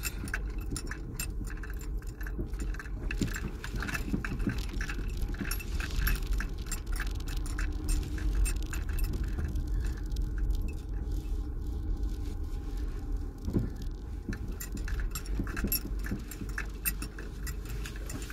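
Car rolling slowly along a rough, unpaved alley, heard from inside the cabin: a steady low rumble with constant light jingling and rattling clicks from small loose objects shaken by the bumps.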